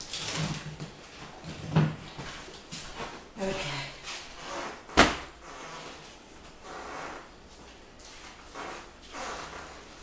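Knocks, clatter and rustling as clothes and hangers are handled in a closet, with a sharp knock about five seconds in.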